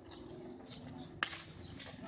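A pitched baseball smacking into the catcher's mitt: one sharp pop about a second in, over faint distant voices and a low steady hum.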